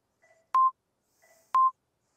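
Workout interval timer counting down the last seconds of an exercise set: two short, sharp beeps a second apart.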